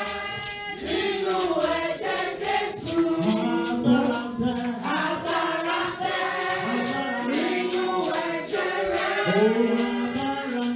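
Church congregation singing a worship song together, with steady rhythmic hand clapping.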